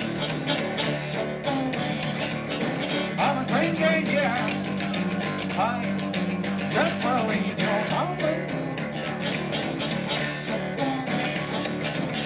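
Solo electric guitar played live through an amplifier in a steady strummed rhythm, with a melody line that bends up and down over it.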